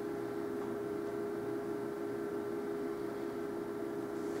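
A steady, unchanging mid-pitched electrical hum over faint hiss.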